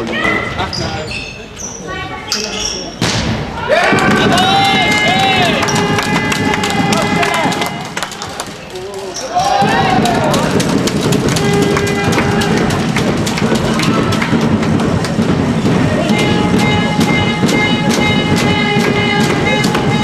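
A handball bouncing on a sports-hall floor amid voices, with music sounding in the hall. The music gets stronger with held tones near the end.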